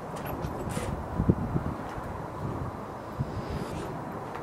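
Volvo D5 electric fuel pump running after the ignition is switched on, a faint steady whine under a steady hiss, building fuel-line pressure to about 55 psi. A few low thumps come about a second and a half in.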